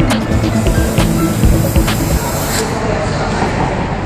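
Canned oxygen hissing from its nozzle as it is inhaled, a steady spray lasting about two and a half seconds before it cuts off, over background music.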